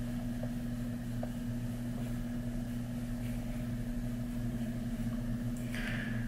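A steady low hum, like a fan or appliance running in the room, holding level throughout with nothing else standing out.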